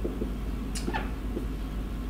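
Whiteboard marker squeaking and scratching on the board as words are written, with a couple of short squeaks about three-quarters of a second and one second in, over a steady low hum.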